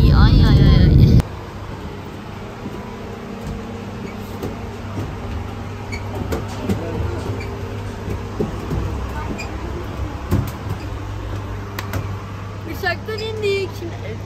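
Loud rumble of a jet airliner's cabin as it taxis after landing, cut off suddenly about a second in. Then a much quieter steady low hum inside an enclosed passenger walkway, with faint steps and a few voices.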